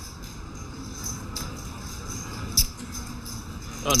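Poker chips being handled and set down on the table for a re-raise: a few light clicks, then one sharp clack about two and a half seconds in, over the steady murmur of a card room.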